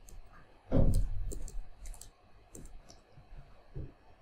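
Typing on a computer keyboard: a run of separate keystroke clicks, the strongest about a second in.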